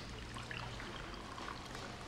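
Quiet room tone: a faint steady low hum under a soft even hiss, with a few faint small ticks.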